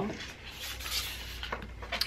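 Soft rustling and sliding of paper sticker sheets and carded washi tape rolls being handled and laid out on a tabletop, with a few light taps.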